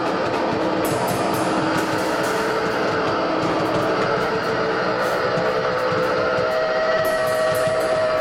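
Live guitar-and-drums duo playing loud: electric guitar holding notes in a dense, noisy wall of sound over drums, with repeated cymbal hits.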